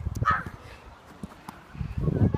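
Low thumps of footsteps and phone handling as the camera is carried across an artificial turf pitch, with a brief shout near the start and the thumps growing heavier toward the end.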